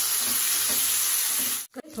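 Ginger-garlic paste sizzling in hot butter in a kadai as it is stirred with a wooden spatula: a steady, loud frying sizzle that cuts off abruptly near the end.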